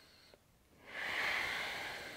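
One long, deep breath out, a soft hiss that starts about a second in and slowly fades away.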